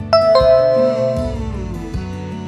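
Two-note chime, a higher note followed a quarter second later by a lower one, ringing and fading over about a second over background music: the correct-answer signal of a quiz.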